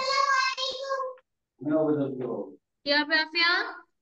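Only voices: a child's high voice drawn out in a sing-song way for about a second, then short bursts of speech, with a spoken 'yeah' near the end.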